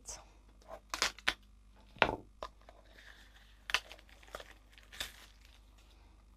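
Clear plastic wrapping being torn and crinkled off a new ink pad, in irregular sharp crackles and rustles.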